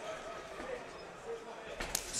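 Quiet hall ambience with faint voices, then near the end a single sharp slap of a kick landing on a leg.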